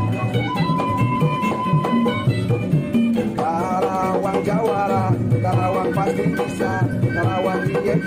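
Background music: a melody over a repeating bass line, playing throughout.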